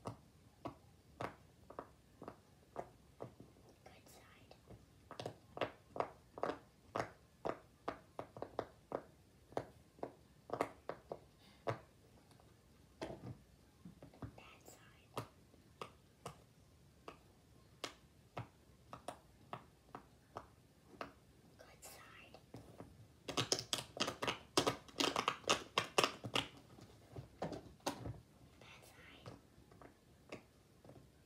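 Silicone pop-it fidget toy bubbles being pressed one after another: a steady run of short, sharp pops about two a second, with a fast flurry of pops about three quarters of the way through.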